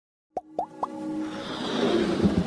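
Animated-logo intro sound effects: three quick plops, each rising in pitch, about a quarter second apart, followed by a swelling whoosh that builds toward the end over a faint sustained musical tone.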